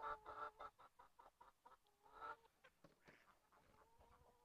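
Near silence, with a hen's faint drawn-out call trailing off at the start, a few soft clicks, and one brief faint sound about two seconds in.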